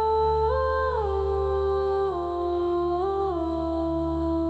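Background music: a wordless hummed melody of long held notes that step up and down every second or so, over a steady low drone.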